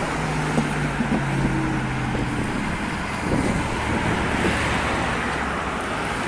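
Road traffic on a busy multi-lane road: cars driving past close by, with a steady low engine hum for the first couple of seconds and another vehicle going by about halfway through.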